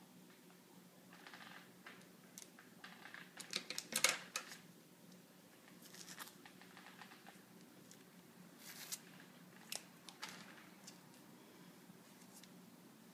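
Faint rustling and crackling of flower stems and asparagus fern sprigs handled in the fingers while a boutonniere is put together, with a cluster of louder crackles about four seconds in and a few more near nine and ten seconds.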